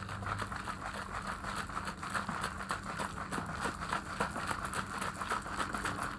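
Water and powdered drink mix sloshing and splashing inside a small plastic bottle shaken steadily by hand, a continuous rapid rattling wash of liquid that mixes the powder into the cold water.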